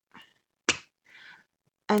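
A single short, sharp snap about two-thirds of a second in, with a faint breath after it.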